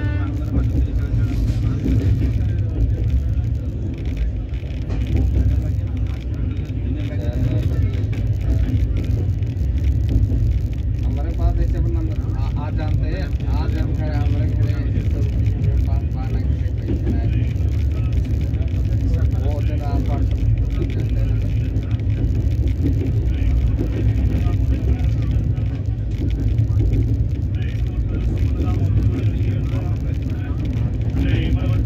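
Steady low rumble of a moving train heard from inside the coach, with faint voices of other passengers in the middle.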